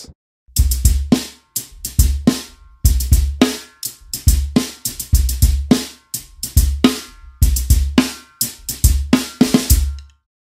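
Drum groove played with sticks: kick drum thumps under repeated hits on a Creative Percussion Skinny Stax cymbal stack mounted on an FX Post above a 14 x 4 inch maple snare. The playing starts about half a second in and stops at the very end.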